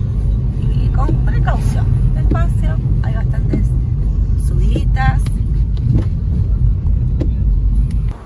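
A car driving in heavy rain, heard from inside the cabin: a steady low rumble of engine and tyres on the wet road, with faint voices over it.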